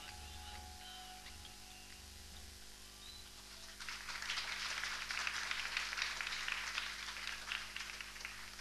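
The last low beats of the music fade out, and about four seconds in an audience starts applauding.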